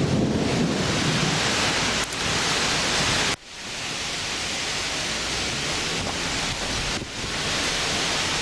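Steady rush of storm wind and rain around a car, with wind buffeting the microphone. The noise cuts off abruptly about three and a half seconds in, then carries on a little quieter.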